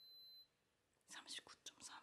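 Braun ear thermometer giving one short, high beep as its reading completes. About a second later comes a whispered voice.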